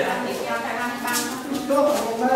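People talking: voices in the room, with a brief hiss about a second in.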